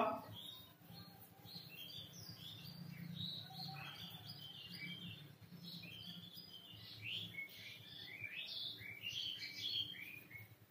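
Faint, short, high chirps and squeaks come one after another, thickest near the end, over a low steady hum.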